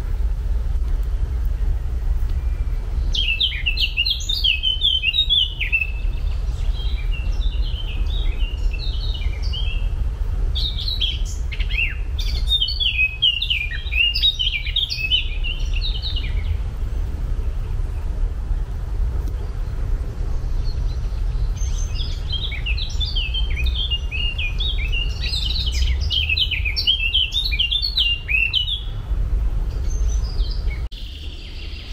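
A songbird singing in long phrases of rapid high notes, three bouts with pauses between them, over a steady low rumble.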